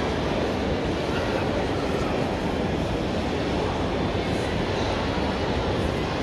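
Steady rumbling background noise of a large convention hall, with no distinct events standing out.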